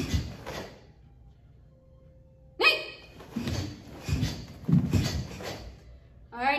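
Bursts of sharp exhales and uniform swish from two karateka blocking and punching, several short bursts spaced about half a second apart. About halfway through comes one short, sharp vocal sound, the loudest thing heard.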